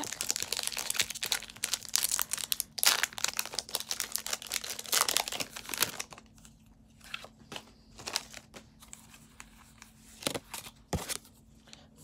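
A foil Pokémon TCG booster-pack wrapper being torn open and crinkled: a dense run of crackles for about six seconds, then sparser clicks and rustles.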